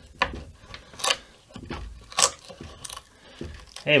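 A steel chisel prying and scraping under a routed-out square of basswood in a guitar body, the soft wood cracking and splitting as it is levered out, in a handful of short cracks and scrapes.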